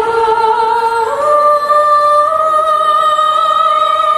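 Unaccompanied singing of long held notes: one note, then a step up to a higher note about a second in that is held to the end.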